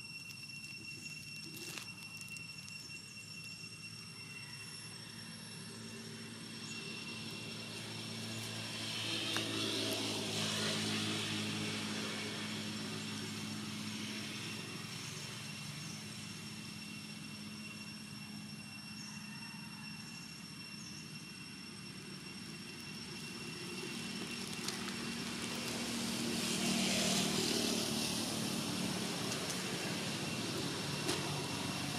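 Motor vehicles passing by, twice: an engine hum with a hiss that swells and fades about ten seconds in, then again near the end, over two faint steady high-pitched tones.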